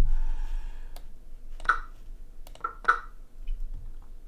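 Short, sharp clicks of pieces being moved on an online chess board in a fast game: one a little under two seconds in, then two in quick succession near three seconds.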